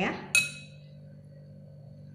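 A single sharp clink of a metal spoon against a glass mixing bowl, ringing briefly with a bright high tone.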